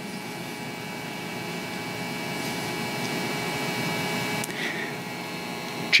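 A steady hum with several faint held tones, growing slowly louder.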